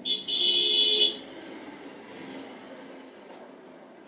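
A single horn-like toot lasting about a second, then faint room tone.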